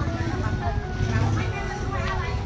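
People talking over music with steady held tones, above a continuous low rumble.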